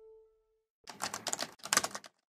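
The last note of the outro music fades out, then two quick bursts of rapid clattering clicks follow, split by a brief break.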